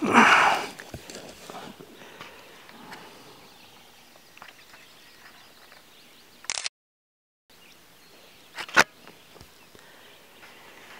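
Quiet outdoor background on calm water while paddling, with a short loud rush of noise at the start and a sharp knock about nine seconds in. The sound drops out completely for under a second near the middle.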